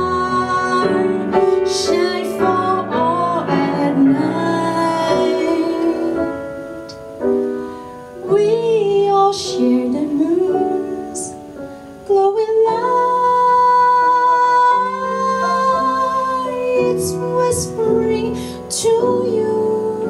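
A woman singing a slow jazz ballad melody with sliding, held notes, accompanied by piano chords.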